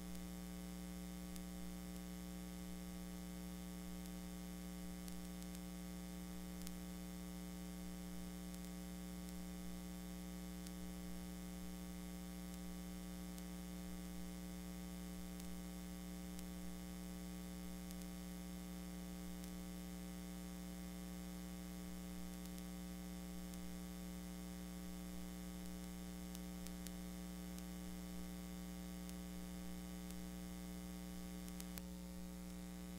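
Steady electrical hum with a constant hiss underneath, unchanging throughout, on a blank stretch of recording with no programme sound.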